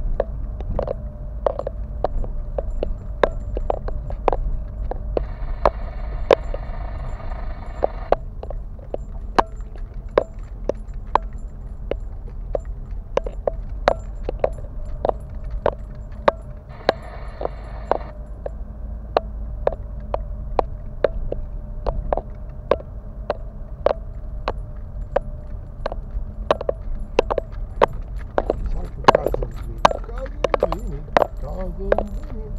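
Car interior noise on a rough, potholed road: a steady low rumble of engine and tyres with frequent sharp knocks and rattles as the car goes over the bumps.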